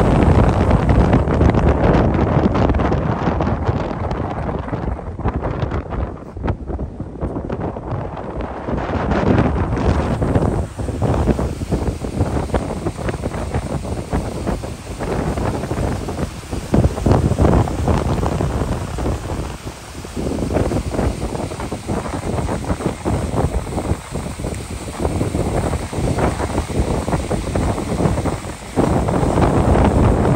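Wind buffeting the microphone on the open deck of a moving passenger ship, rising and falling in gusts, over the rush of water along the hull.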